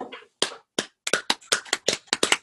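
One person clapping hands, a few spaced claps that quicken about a second in to a run of roughly five claps a second.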